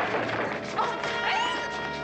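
Fight-scene background music with a crash and thwacking impacts of a scuffle, the sharpest hit a little under a second in.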